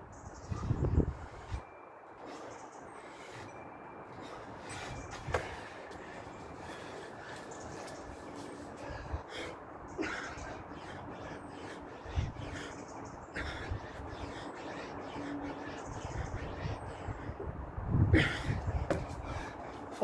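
Steady outdoor background noise, with low rumbling gusts of wind on the microphone in the first second or two and again near the end, and a few faint clicks and knocks.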